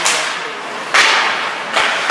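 Three sharp cracks of hockey sticks and puck during play, at the start, about a second in and near the end, the one about a second in the loudest, each trailing off in the rink's echo.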